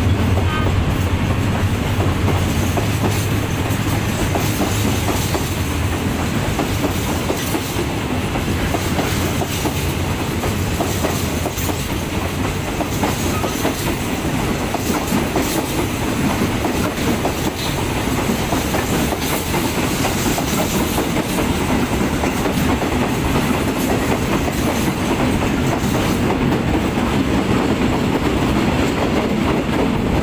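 A freight train of empty flat wagons rolling past, its wheels clacking steadily over the rail joints. A low hum is heard over the first few seconds and fades out.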